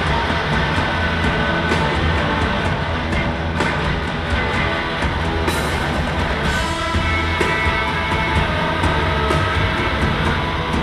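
Live post-punk rock band playing: loud, driving electric guitars over bass and drums, with a cymbal crash about halfway through.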